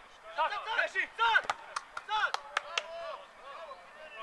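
Several men shouting short calls over one another, loudest about a second in, with a few sharp knocks among them.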